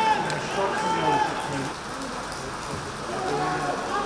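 Voices calling out across a football pitch during play, over a steady background hiss.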